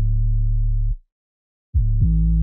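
Sustained 808 bass notes, set with the hold all the way up so each note is held rather than a short punch. One low note holds until about a second in and cuts off. After a short gap the next note starts near the end.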